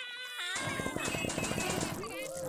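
Cartoon sound effects over light background music: squeaky, warbling character vocalizations, and from about half a second in a rapid fluttering rattle as a toy blaster fires.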